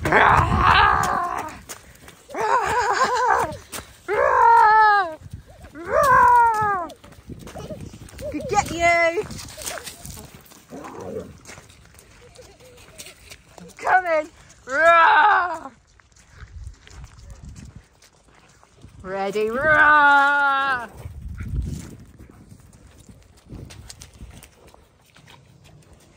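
Excited laughing and squealing from a toddler and an adult playing chase, in about eight loud bursts with quieter gaps between, several of them high and falling in pitch.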